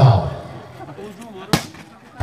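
A volleyball hit once, a single sharp smack about one and a half seconds in, over faint crowd noise.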